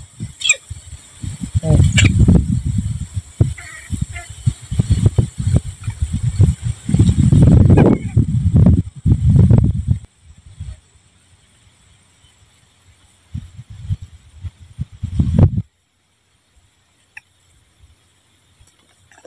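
Microphone buffeting: irregular low rumbling bursts, heaviest through the first ten seconds and again a few seconds later, then cutting off suddenly to near quiet about three-quarters of the way through.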